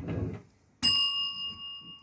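Chrome dome counter bell (shop bell) struck once about a second in, giving a clear, high ring that fades away over about a second. Just before it, at the start, there is a brief soft rustle.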